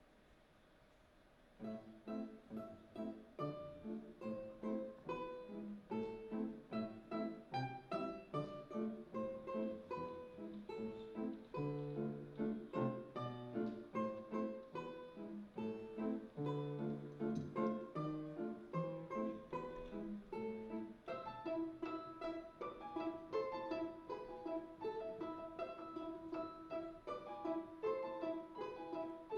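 Balalaika and piano duet: the music starts about a second and a half in, with crisp plucked balalaika notes over piano chords. In the last third the playing turns to a run of rapidly repeated notes.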